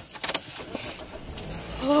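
A few quick small clicks and rattles, then soft rustling handling noise inside a car, with a brief voice starting near the end.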